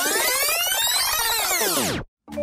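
Electronic glitch-transition effect over pop music: a comb of tones sweeps up and then back down, and the sound cuts off suddenly at the end.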